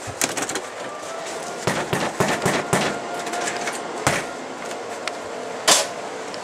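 A run of irregular clicks and knocks over a steady hiss, with a louder knock near the end.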